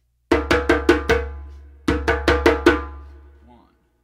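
Djembe slaps played with alternating hands, right-left-right-left-right: two quick runs of five sharp strokes, each run ringing out briefly after its last stroke.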